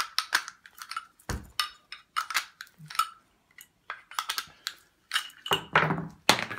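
Metal parts of a power mixer's blade assembly and its blade tool clinking and clicking together as the assembly is twisted loose by hand. Irregular small metallic clicks with a heavier knock about a second in and a louder clatter near the end.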